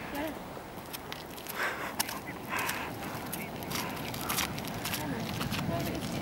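Bicycle rolling over loose, coarse volcanic sand: the tyres crunch, and there are scattered clicks and rattles, with faint voices mixed in.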